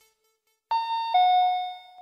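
Two-note descending public-address chime of the kind that precedes an Italian railway station announcement: a higher note about two-thirds of a second in, then a lower note that rings out.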